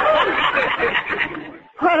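Studio audience laughing together after a punchline, dying away about a second and a half in, heard through a narrow-band old radio recording.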